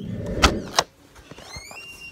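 Handling noise on a phone's microphone: a low rumble and two sharp clicks as a hand grabs the phone. Near the end comes a faint high tone that rises and then holds steady.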